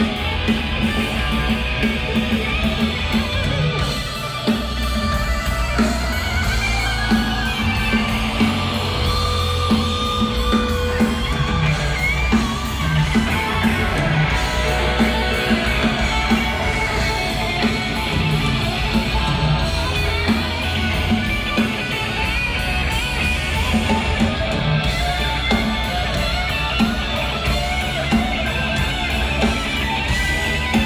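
Live rock band playing an instrumental passage led by two electric guitars, with bass and drums underneath; loud and continuous, with no singing.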